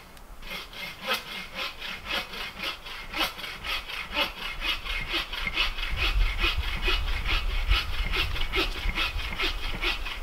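A dog panting steadily, about three rasping breaths a second.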